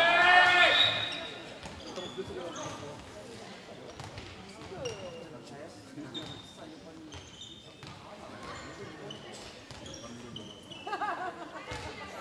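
Indoor handball play on a sports-hall floor: a loud shout at the start and voices calling near the end, with short high squeaks of sneakers and a few thuds of the handball bouncing in between.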